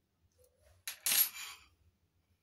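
Miniature stainless-steel toy spoons clinking together as they are handled: a sharp tick, then a brief, louder metallic jingle about a second in.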